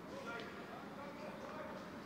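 Faint, distant voices from the field over a low, steady background hiss from the ground.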